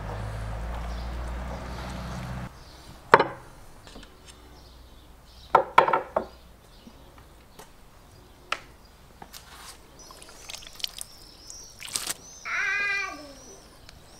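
Scattered light knocks and taps from handling food on a wooden cutting board, over a low hum for the first two seconds or so. Near the end, a high, wavering cry about a second long.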